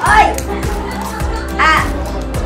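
Background music with two short, high-pitched yips from small dogs excited over a toy, one at the start and one near the end.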